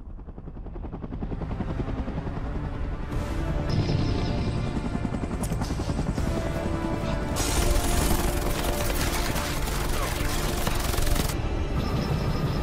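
Helicopter approaching, its low rumble growing steadily louder under a film score. From about seven seconds in, a loud harsh rush of noise joins in for about four seconds, then cuts off.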